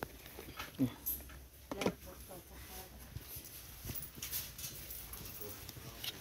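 A few short, wordless voice sounds, with light clicks and rustling in between, over a steady low hum.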